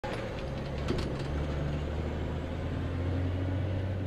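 A van's engine running steadily with road noise, heard from inside the cab while driving, with a low hum and a few faint clicks about a second in.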